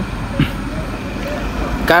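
Steady outdoor street background with a low rumble, and a brief voice sound about half a second in.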